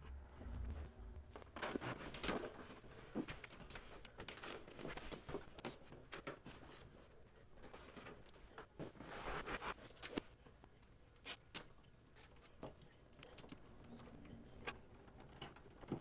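Faint handling noises under a desk: scattered rustles, light taps and small knocks as speaker cables and a wired volume control are fixed to the underside of the table with tape.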